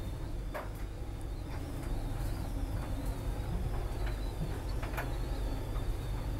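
Steady low hum inside a yacht's interior, with a faint wavering high whine above it and a few faint clicks.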